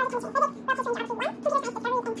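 A voice sped up to a high, chipmunk-like pitch, chattering rapidly in quick syllables, over a steady low hum.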